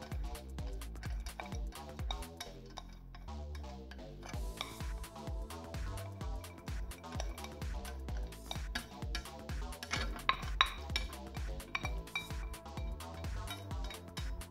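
Background music with a steady beat, over clinks and scrapes of stainless steel bowls knocking together as onion and marinade are scraped from one bowl into another. There is a sharper clink about ten seconds in.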